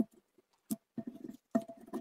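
A deck of oracle cards being shuffled and handled by hand: a quick tap, another a little later, then a run of rustling, slapping card sounds in the second half.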